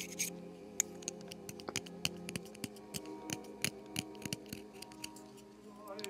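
Reed knife scraping cane from an oboe reed: irregular light scratches and clicks of the blade on the cane, several a second, over a faint steady hum.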